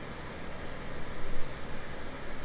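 Rolls-Royce power window motor raising the frameless side glass, a low steady hum with a slight swell about a second and a half in.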